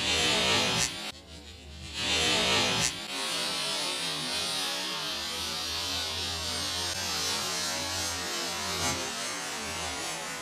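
Small firework fountain hissing as it sprays sparks: two loud bursts of hiss in the first three seconds, then a steady hiss with a low hum underneath.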